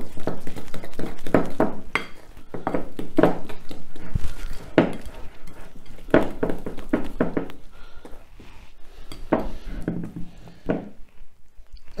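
Wooden spoon knocking and scraping against a glass mixing bowl while beating a thick almond sponge batter: an irregular run of knocks, growing sparser and quieter near the end.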